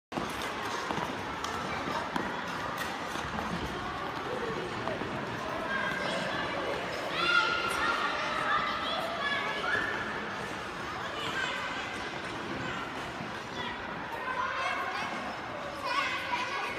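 Children's voices calling out over a steady background hubbub of people on the ice, with scattered light knocks; the voices come mostly in a burst about six to ten seconds in and again near the end.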